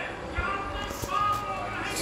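Indistinct talking, with music underneath.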